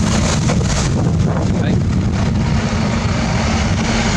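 Wind rumbling on the microphone over busy city street traffic, with a double-decker bus running close by.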